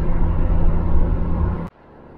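Steady low drone of a 1977 Ford Maverick's 250 straight six and its road noise, heard inside the cabin at highway speed. About a second and a half in it cuts off suddenly to a much quieter drone.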